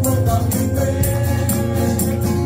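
Live Vietnamese worship song: male voices singing into microphones, backed by keyboard and acoustic guitar, over a steady beat.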